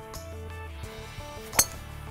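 A golf driver striking the ball off the tee: one sharp click about one and a half seconds in, over background music.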